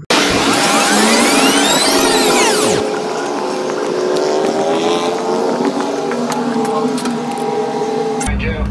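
An edited-in fast-forward sound effect: a dense whoosh of sweeping pitches for the first three seconds or so, then steady music-like tones.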